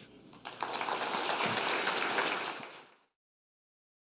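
Audience applauding, starting about half a second in and fading out about three seconds in.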